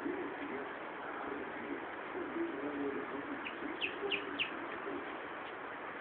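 Doves cooing in low repeated phrases over a steady hiss, with a quick run of three or four high chirps from another bird about four seconds in.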